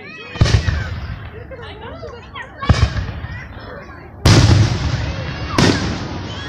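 Aerial fireworks shells bursting overhead: four sudden booms, about a second in, near three seconds, and two close together in the last two seconds. The third boom is the loudest and rumbles on for about a second.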